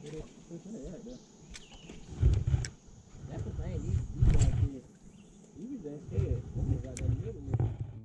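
Low, indistinct talking, under intermittent low rumbling bursts, with a few sharp clicks.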